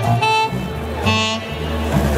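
ROLI Seaboard synth keyboards playing jazz: short melody notes over sustained bass notes.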